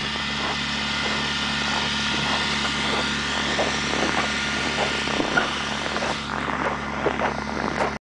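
Vehicle engine running with a steady low hum, heard from inside the cab, with an even road-noise hiss and scattered small knocks and rattles that come more often near the end.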